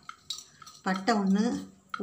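Light clinks of a steel plate as whole spices are handled on it, with a short spoken phrase about a second in.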